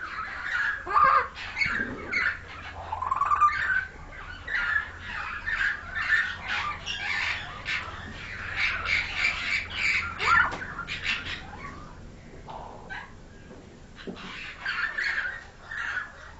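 Pied mynas calling: a busy, continuous stream of harsh squawks and short gliding whistled notes, thinning out about twelve seconds in, with a last flurry of calls near the end.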